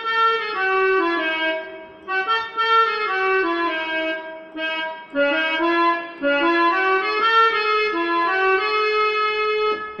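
Electronic keyboard playing a slow melody one note at a time, in three phrases with short breaks about two and five seconds in. The notes are held steadily rather than dying away.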